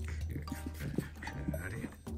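Chihuahua puppy play-growling in short, irregular bursts while mouthing and snapping at a person's hand.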